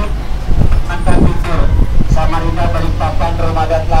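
Low, steady engine rumble of an open-sided tour bus rolling along. A voice talks over it for about the second half.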